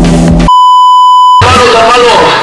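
A loud, steady electronic bleep tone of just under a second, the classic 1 kHz censor bleep, cuts in abruptly over music and stops just as abruptly. Outdoor crowd noise and voices follow it.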